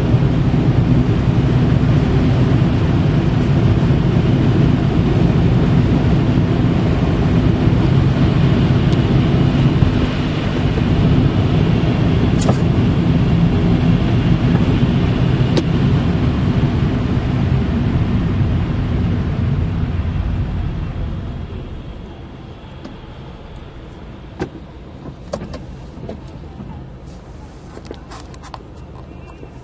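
Car cabin noise while driving on a snowy road: a steady low rumble of tyres and engine that falls away about three-quarters of the way through as the car slows to a stop, leaving a quieter idle with a few faint clicks.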